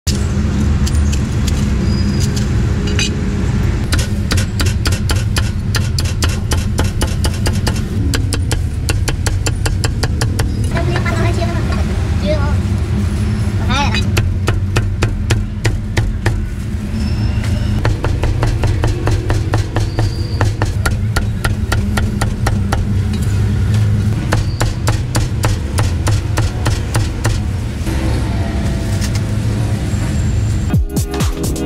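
A large meat cleaver chopping roast pork on a round wooden chopping block: quick runs of sharp knocks, several a second, with short pauses between runs. A steady low street-traffic rumble runs underneath.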